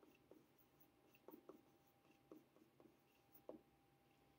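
Faint, irregular taps and short strokes of a stylus writing a word on a tablet.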